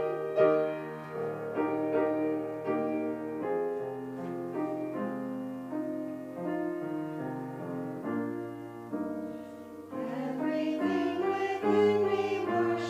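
A piano playing alone, then a small women's choir comes back in singing near the end.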